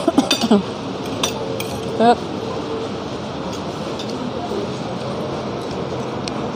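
Spoon and fork clinking against a plate while eating, with a quick run of clinks in the first second and a few more about two seconds in, over a steady background hiss. A couple of brief voice sounds come near the start and about two seconds in.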